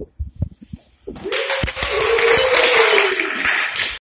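A few short knocks, then from about a second in, a small audience breaks into loud applause, with one voice holding a long cheer over the clapping.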